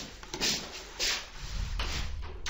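A few short rustling noises close to the microphone, about four in two seconds.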